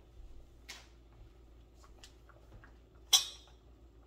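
A wooden spoon knocks sharply once against an enamelled cast-iron soup pot about three seconds in as stirring begins, over a faint steady hum and a few light clicks.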